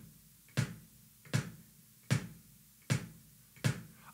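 Bass drum kicked with a foot pedal's beater, played flat-foot: five even strokes about three-quarters of a second apart, each a short thud.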